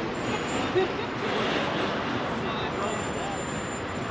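Busy city street ambience: steady traffic noise with the indistinct chatter of passers-by, and a brief knock just under a second in.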